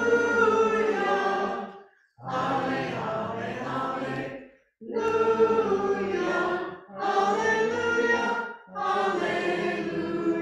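A small church congregation sings a hymn together in sung phrases of about two seconds each, with short breaks between them.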